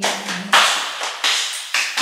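Rhythmic handclaps and body percussion, about four sharp strikes roughly two a second, keeping the beat of an a cappella song between sung lines.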